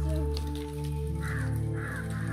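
A crow cawing in a quick run of short caws, about two a second, starting about a second in, over background music with sustained chords.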